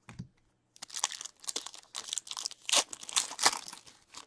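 Foil wrapper of a hockey card pack being crinkled and torn open by hand: a dense run of sharp crackling from about a second in until near the end.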